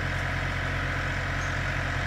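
A steady low mechanical hum, as of an engine idling, holding an even level throughout.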